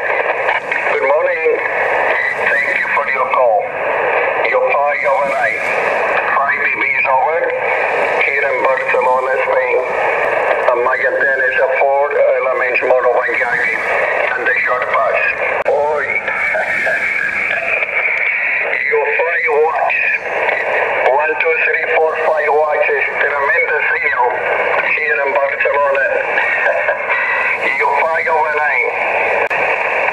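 Single-sideband voice signals on the 40 m amateur band, heard through the small built-in speaker of a Yaesu FT-817 transceiver: speech squeezed into a narrow, thin range over a steady hiss of band noise.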